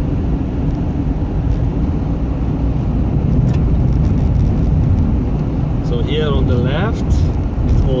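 Steady low road rumble heard inside a moving car's cabin, from tyres running on an icy, snow-covered highway with the engine underneath. A brief voice sound comes near the end.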